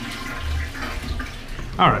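Toilet flush: rushing water in a small tiled bathroom, tailing off about a second and a half in.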